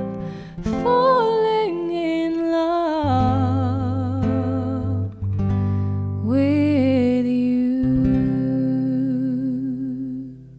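Female voice singing over acoustic guitar. About six seconds in she holds a long final note with vibrato, with guitar chords ringing under it.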